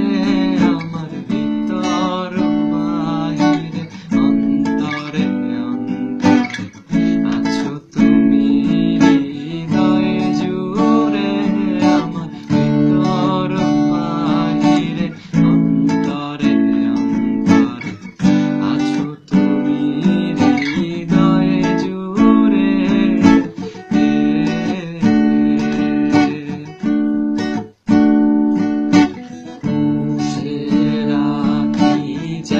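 Acoustic guitar strummed in a steady rhythm, accompanying a man singing a Bengali song.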